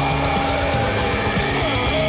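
Doom/death metal track from a reference mix playing at full level: dense, distorted guitars, with a note sliding down in pitch near the end.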